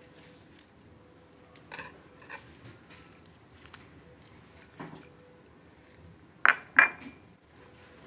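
Faint knocks, then two sharp clinks close together near the end, from dates being dropped into a stainless steel bowl of tamarind soaking in water.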